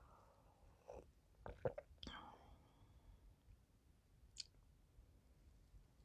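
Near silence, with a few faint short sips and slurps of hot coffee from a mug about one to two seconds in, and a single tiny click past the middle.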